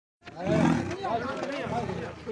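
A leopard growls loudly about half a second in, under several men talking and calling out at once.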